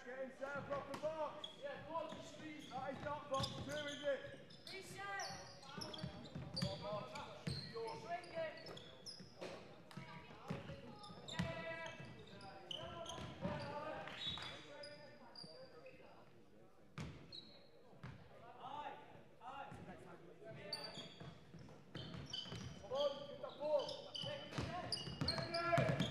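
Basketball game play on a wooden court in a large, echoing sports hall: the ball bouncing as it is dribbled, short high squeaks of shoes on the floor, and players calling out to each other. A quieter patch comes a little past the middle.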